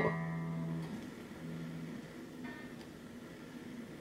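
An unamplified electric guitar's open E string rings and slowly fades. About a second in the note briefly wavers as the whammy bar is pressed, then comes back to the same pitch: the floating tremolo, held by its new stabilizer, returns to tune.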